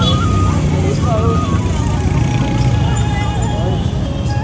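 Busy street traffic, mostly motorbikes with some cars, running steadily past. Music carries a held, stepping melody line over it.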